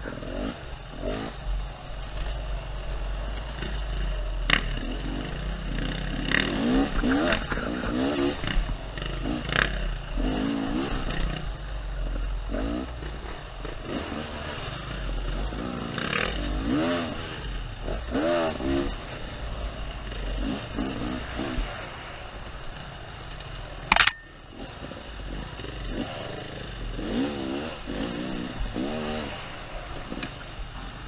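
Beta enduro dirt bike engine ridden hard on a forest trail, its pitch rising and falling over and over as the throttle is blipped and rolled on. Scattered knocks and clatter come from the bike working over the rough ground, with one sharp, very loud knock late on.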